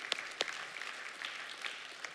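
A congregation applauding, with a few sharper close hand claps standing out in the first half second.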